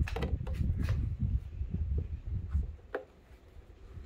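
Handling noise from a plastic tail-light unit being pressed and shifted in the hands: a low rumble with a few sharp plastic clicks, dying away about three seconds in.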